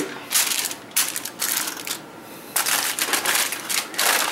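Aluminum foil crinkling and crackling as hands press and crimp it down over the edges of a baking dish, in irregular bursts with a brief lull about two seconds in.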